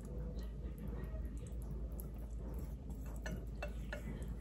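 Thin liquid pouring quietly from a glass measuring cup into a plastic pint container, with a few faint clicks near the end.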